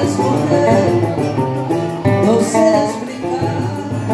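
Live acoustic Brazilian country music: a guitar and a cavaquinho plucked and strummed together, with a voice singing.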